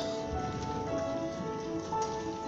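School choir singing, several voices holding long notes together in parts, with a steady hiss of noise beneath the singing.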